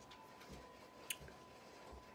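Near silence: room tone with a faint steady whine and one light click about a second in, from handling a small action camera and its wrist strap.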